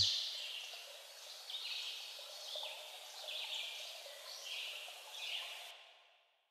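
The music cuts off, leaving faint, short, high-pitched chirps about once a second over a soft hiss. They stop shortly before the end.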